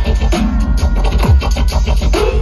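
Loud wonky bass-style electronic music played over a festival sound system and heard from within the crowd: a dense, fast beat over heavy deep bass, with a downward-sweeping bass hit a little after a second in.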